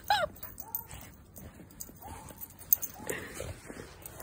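A woman's laugh trailing off, then soft crunching and rustling in deep snow with a few faint, short whines from a dog.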